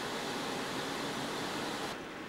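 Steady, even hiss of background noise in a ship's interior lounge, with no distinct sounds standing out.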